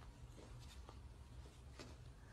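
Near silence: room tone with a low hum and a few faint short clicks.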